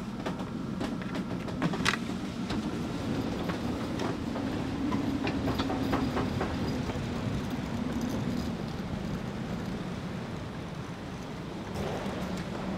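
Strong storm wind rushing and buffeting around a sailboat's cockpit and onto the microphone, a steady low roar that swells a little near the middle. A few sharp clicks in the first two seconds come from the companionway door latch being opened.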